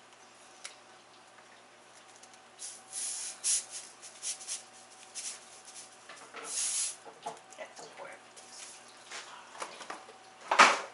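Salt pouring from the spout of a salt canister in short hissing pours, about three seconds in and again about six seconds in, with light clicks and rattles of the canister being handled.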